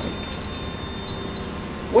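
A pause between spoken sentences, filled with steady background noise and a thin high tone. A faint high chirp comes a little after a second in, and a man's voice starts again right at the end.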